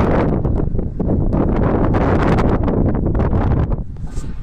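Wind buffeting the microphone: a loud, rough rumble that keeps rising and easing, with crackling gusts.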